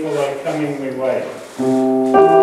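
A man speaking, then about one and a half seconds in a keyboard starts a held chord, its notes sustained steadily without fading.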